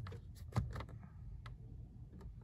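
A few faint short clicks, about half a second in and again near the middle, over a low steady hum in a car cabin just after the ignition is switched on.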